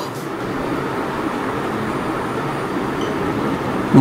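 Steady, even background noise: a constant rushing hiss with no separate events.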